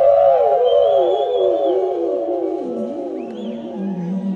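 Live rock band closing a song: a sustained, wavering tone with several strands that slides steadily down in pitch and fades.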